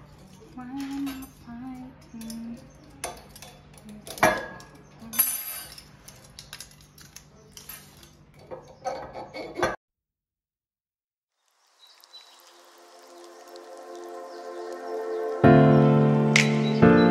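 Waiter's corkscrew working a cork out of a wine bottle: scattered metallic clicks, scrapes and knocks, the sharpest about four seconds in. After about ten seconds the sound cuts off suddenly, and music fades in, loud near the end.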